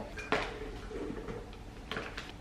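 Two light knocks of kitchen bowls being handled, one shortly after the start and a smaller one near the end, with quiet rustling between.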